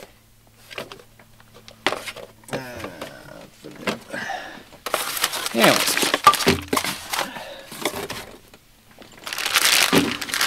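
Cardboard box and a clear plastic bag being handled while a boxed figure is unpacked: light clicks and scrapes of the cardboard at first, then plastic packaging crinkling, loudest near the end.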